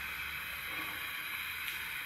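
Steady low hiss with a faint hum underneath, room tone between words, with one faint tick near the end.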